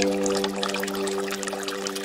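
Water trickling and dripping from a bamboo water-fountain spout, many small splashes, while a held piano chord fades away underneath.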